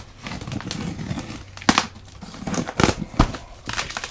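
A taped cardboard box being torn open by hand: cardboard and packing tape crinkling and scraping as the flaps are pulled back, with a few sharp snaps in the second half.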